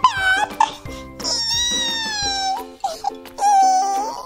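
Light background music with a high-pitched voice over it, making several drawn-out gliding calls; the longest lasts about a second and a half in the middle.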